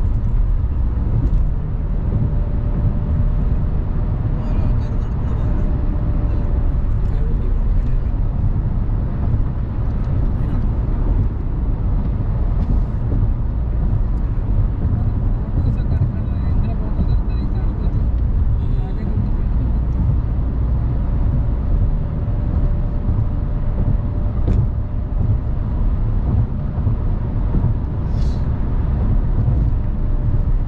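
Steady road noise inside a car cruising on a highway: a constant low rumble of tyres and engine, with a faint steady hum that comes in early and again in the second half.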